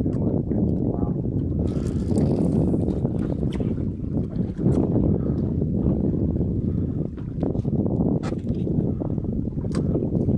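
Wind rumbling on the microphone over open water, with small waves lapping at the boat's hull. A few short knocks and splashes break through, around two seconds in and near the end.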